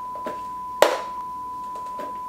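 A steady electronic beep tone holds one high pitch, with a single sharp knock a little under a second in and a few faint taps.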